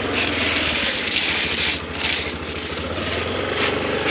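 A small scooter engine running steadily as the scooter moves off under the learner, a low even hum with a hiss over it that swells and fades a few times.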